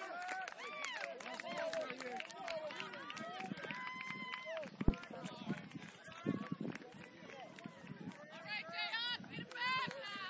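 Rugby players and sideline spectators shouting and calling across an open field, many voices overlapping, with one held call about four seconds in. A single sharp thud comes about five seconds in.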